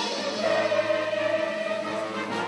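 Live musical-theatre music: pit orchestra playing under choral singing, with one long note held for over a second through the middle.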